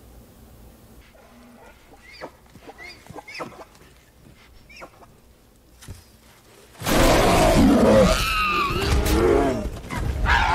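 Film soundtrack: a bear roaring loudly for about three seconds near the end, after a stretch of faint scattered forest clicks and rustles.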